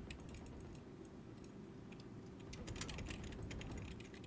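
Faint computer keyboard clicking: quick, irregular key presses that grow busier in the second half, as a game is played on the keyboard.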